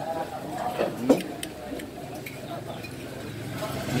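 Diners' chatter in a busy eating stall, with a sharp clink about a second in, like a metal spoon against a plate, and a few lighter clicks. A low steady hum comes in from about halfway.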